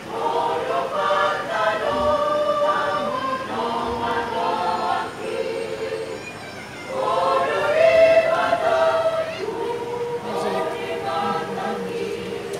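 A large church choir singing together in long phrases with held notes, swelling loudest about eight seconds in.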